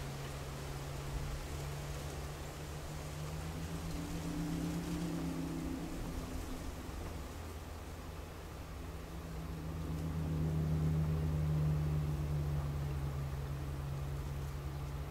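A low, steady mechanical hum with a fainter higher tone wavering over it, swelling louder about ten seconds in and easing off near the end.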